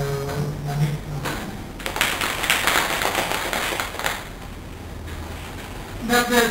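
Audience applauding for about two seconds, starting about two seconds in and then dying away.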